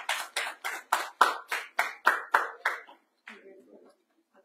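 Hands clapping in an even, quick rhythm, about four claps a second, stopping a little before the end. The clapping follows the close of a spoken message.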